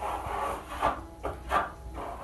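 Steel spatula scraping acrylic decorative plaster across a wall in several short strokes, taking the excess off to leave a thin layer.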